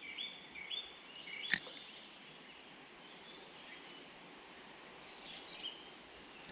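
Faint birdsong: short whistled notes in the first second and a half, then a few thin high chirps later on. A single sharp click sounds about a second and a half in.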